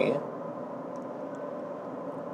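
Steady road and tyre noise heard inside the cabin of a 2024 Toyota RAV4 cruising at highway speed.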